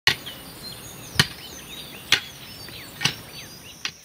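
Hand hoe chopping into dry soil, five strokes about a second apart.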